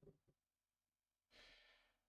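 Near silence with a couple of faint ticks at the start, then about a second and a half in a person drawing a soft breath in: the start of a sigh of frustration at a mistake.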